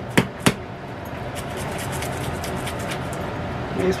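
Plastic seasoning shaker bottle shaken by hand: two sharp knocks in the first half-second, then a steady faint hiss.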